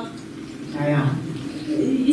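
A brief low vocal murmur, like a hummed "hm", about a second in, between lines of dialogue.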